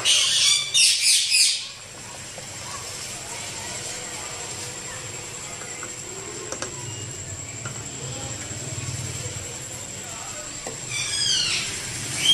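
Small birds chirping in quick, high bursts for the first two seconds and again near the end, over a steady low background noise.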